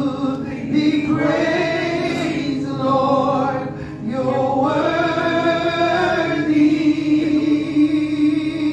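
Gospel praise team of men and women singing together through microphones, holding long notes that slide from one pitch to the next.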